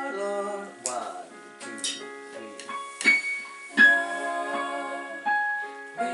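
Keyboard piano playing chords, each struck sharply and held, with singers' voices joining in.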